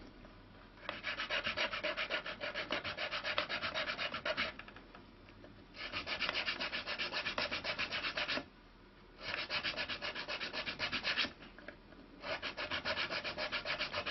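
Round-bottomed needle file filing string notches into a willow lyre bridge: rapid back-and-forth strokes in four bouts, with short pauses between them.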